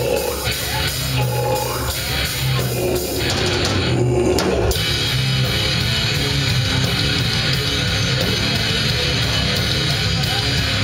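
Heavy metal band playing live at full volume: distorted electric guitars, bass and drums. Around four seconds in the cymbals drop out briefly, then the band comes back in as a steady, dense wall of sound.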